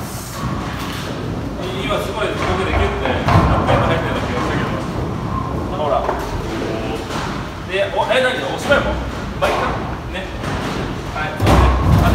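Bowling-alley noise in a large hall: voices talking, broken by dull thuds of bowling balls and pins, the heaviest about half a second before the end.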